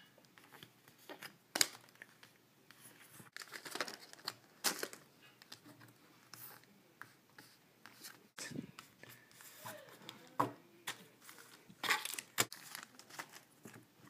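Faint handling of Yu-Gi-Oh! trading cards and foil booster pack wrappers: scattered soft brushes, taps and crinkles as cards are slid and laid down, with a few longer tearing sounds.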